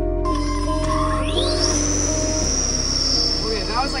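Electric hub motor in the motorcycle's raised rear wheel spinning up under throttle: a high whine that climbs steeply about a second in, then holds high and sags slowly.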